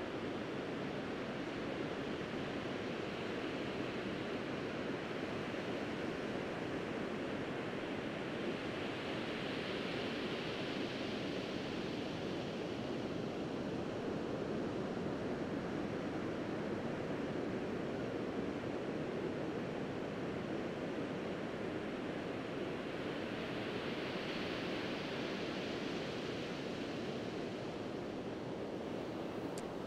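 Sea surf washing onto the beach in a steady wash of noise. It swells louder twice, about ten seconds in and again near the end.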